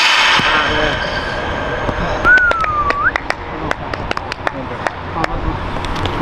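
Footballs being struck in a passing drill: a run of sharp kicks, about two to three a second, with a voice calling out at the start and other voices in the background. About two seconds in, a short whistled note dips and then rises.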